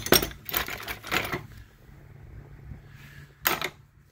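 Metal hand tools (screwdrivers, pliers) clinking and clattering against each other as a hand rummages through a small tray of them: a few sharp rattles in the first second and a half, and another about three and a half seconds in.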